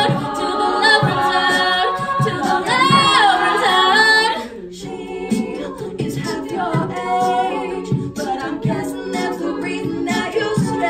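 All-female a cappella group singing, lead voices over layered backing voices. A loud, full passage breaks off about four seconds in, and the singing carries on softer and choppier.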